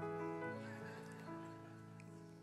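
Keyboard playing soft held chords under the sermon, changing notes twice and slowly fading.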